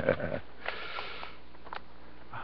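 A man's short vocal sound, then a sniff about half a second in, followed by a few faint clicks.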